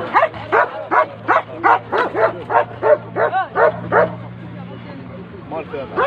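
A dog yapping in a quick run of short, high yelps, about three a second, that stop about four seconds in. A low steady hum runs underneath.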